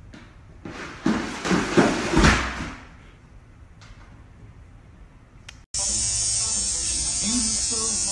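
A plastic laundry basket with a cat in it slides and bumps down wooden stairs, a loud rush of bumps lasting about two seconds. Near the end an electric toothbrush starts buzzing, loud and steady.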